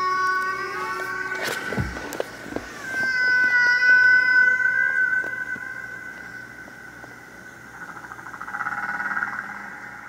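Humpback whale song, recorded underwater: long, high, drawn-out calls with overtones. One slides down to a low groan about two seconds in, a strong steady call is held around four seconds, and a quavering call comes near the end.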